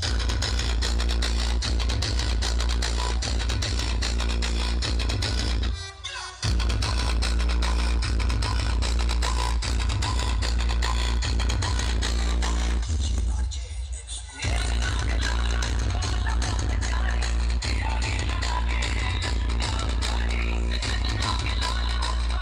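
Loud electronic dance music with heavy bass from a DJ sound-system truck's large speaker rig. The music drops away briefly twice, about six seconds in and again around thirteen to fourteen seconds.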